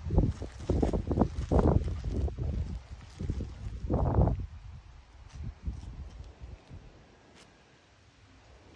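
Gusty wind buffeting the microphone in irregular low rumbles for the first four seconds or so, then dying away to a faint background with a few light clicks.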